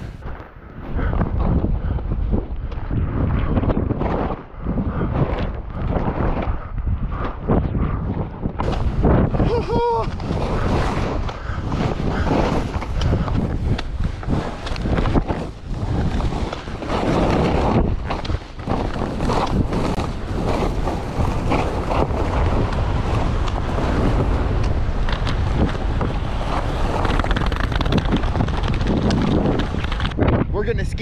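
Wind buffeting the microphone during a fast ski descent, with the hiss and scrape of skis carving through fresh snow, swelling and dipping with each turn. A brief pitched call sounds about ten seconds in.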